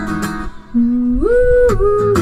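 A woman singing live over her own strummed acoustic guitar. A held note fades about half a second in, and after a brief dip she starts a new phrase that steps upward in pitch.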